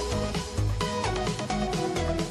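Background music: an electronic track with a steady beat, low bass thumps about twice a second under sustained melody notes.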